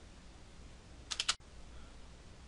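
Faint room hum with a quick cluster of three or four sharp clicks about a second in, like computer keys or a mouse button being pressed as the slide is advanced.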